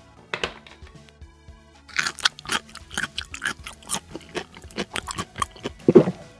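Close-up chewing and crunching eating sounds, a rapid irregular run of wet clicks and crunches starting about two seconds in, over soft background music.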